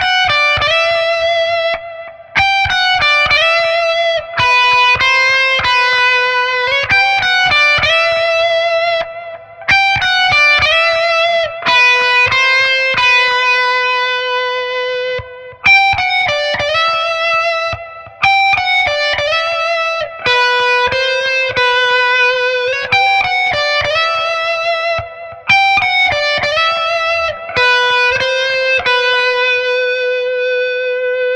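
Electric guitar lead tone from a Charvel Pro-Mod San Dimas, played as a repeated lead riff of quick runs and held notes with vibrato, in phrases broken every few seconds. It sounds first through the Fishman Fluence Classic pickups in the middle position, then, after a break about halfway through, through the EMG Retro Active Super 77 neck pickup.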